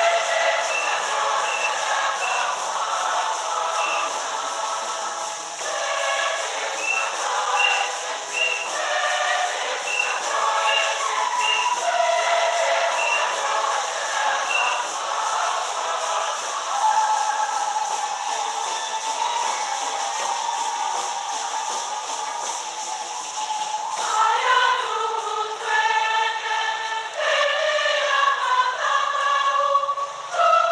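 A church choir singing a hymn during the Mass, sounding thin with almost no bass, and growing fuller and livelier in the last few seconds.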